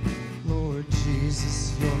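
Live worship band music: acoustic guitar and drums under a sung vocal line.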